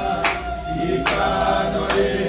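A choir singing, with a sharp beat about every second.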